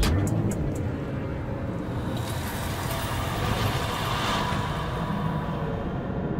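Eerie end-card soundtrack: a low rumbling drone with a whooshing swell that builds in the middle and then eases off.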